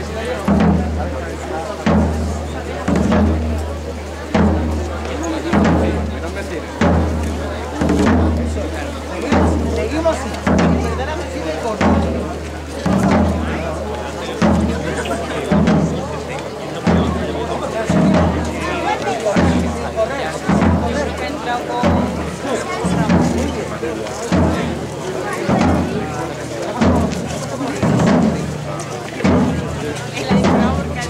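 Processional drums, bass drum prominent, beating a slow, steady march at about one stroke a second.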